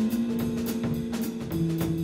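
Live jazz group playing: a drum kit keeping time under an electric bass guitar, with long held notes that change to a lower pair about one and a half seconds in.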